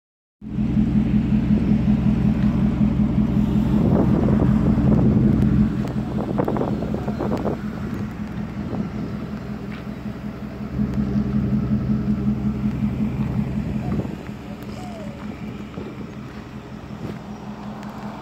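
Mack Anthem semi truck's diesel engine idling steadily, its level swelling and falling back twice.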